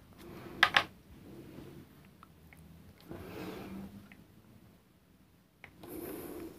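Soft handling of a hand-carved rubber stamp on paper at a tabletop, with two light taps close together a little under a second in, then faint rubbing as the stamp is pressed down to print.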